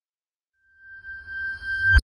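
A chime sound effect played in reverse. A bright ringing tone with a low boom under it swells up from about two-thirds of a second in and cuts off abruptly at its loudest.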